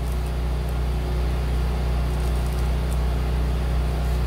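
A steady low hum under a faint, even hiss.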